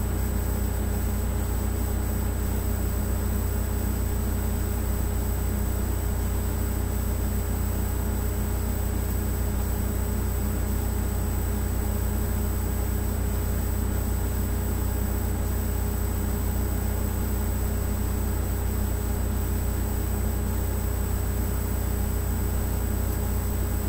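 Steady low hum with a thin high-pitched whine over faint hiss, unchanging throughout.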